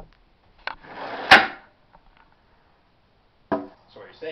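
A short scraping rush ending in a single sharp wooden knock, like something being slid and set down or shut hard; a brief vocal sound follows near the end.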